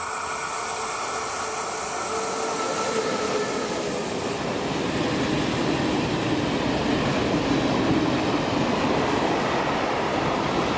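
Freight train passing close on a curve: a ČD Cargo class 363 electric locomotive goes by, then a string of hopper wagons rolls past with a steady rumble of wheels on rail that grows a little louder about halfway through.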